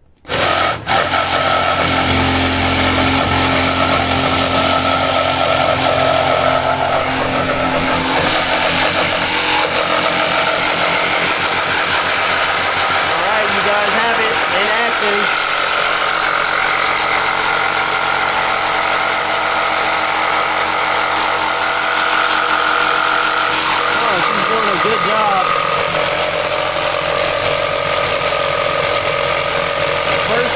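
Milwaukee M12 cordless jigsaw starting about half a second in and then running steadily as it cuts through a 2x4 with a wood-cutting blade.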